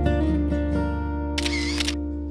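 Background music of strummed acoustic guitar, with a short camera-shutter sound effect about one and a half seconds in marking the change of photo.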